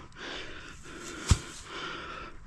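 A metal pry bar knocking once against a stuck septic tank lid, just over a second in, over soft scraping and breathing.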